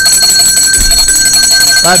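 A loud ringing tone, trilling rapidly at a steady pitch, with a voice beneath it.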